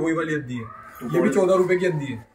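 A man talking in Hindi, in short phrases with a brief pause about half a second in.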